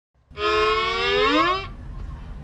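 A vehicle horn giving one long honk of about a second and a half, over a low engine rumble.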